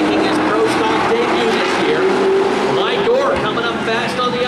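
A pack of Pro Stock stock cars' V8 engines running together around the oval in a steady drone, the pitch sliding up and down about three seconds in as the cars go through a turn.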